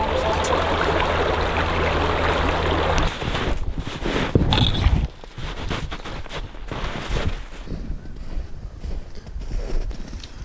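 Electronic music with a hissing wash cuts off abruptly about three seconds in. Then footsteps crunch unevenly through crusted snow, with rustling of clothing and gear.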